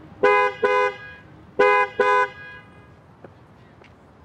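A two-tone car horn honking four short beeps in two pairs, the second pair about a second and a half after the first.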